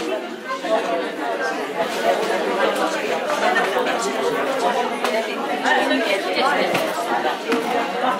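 Many women talking at once in a crowded room: a steady babble of overlapping conversation.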